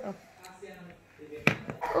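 A person's voice saying a single word at the start, then a quiet stretch broken by one sharp click about one and a half seconds in, with a voice starting again just before the end.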